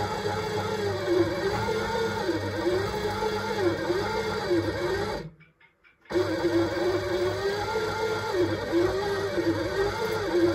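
Electric kitchen machine's motor kneading bread dough, its whine wavering up and down in pitch about once a second as the dough drags on it, over a steady low hum. The sound cuts out for under a second about halfway through.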